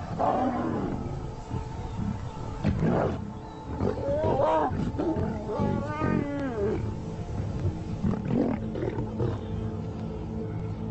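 Lions growling in a fight with a herd of African buffalo, with a run of rising-and-falling calls in the middle, over a steady background music drone.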